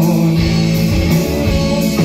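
Rock band playing live: electric guitars ringing over a drum kit, loud and steady.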